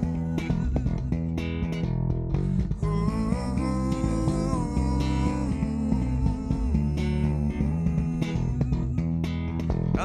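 Electric bass guitar played solo with no other instruments, carrying the chords and melody with several notes sounding together over a steady, continuous groove.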